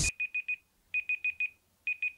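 Smartphone timer alarm beeping: quick groups of four high beeps, a new group about every second, signalling that the countdown has run out.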